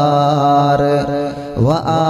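A voice chanting Arabic devotional verses (salawat on the Prophet) in a long melodic line of held notes, dipping briefly and sliding upward in pitch about three quarters of the way through.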